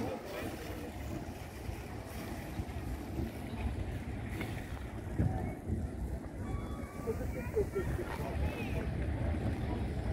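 Harbour ambience: a steady low rumble of wind on the microphone, with faint scattered voices of people nearby.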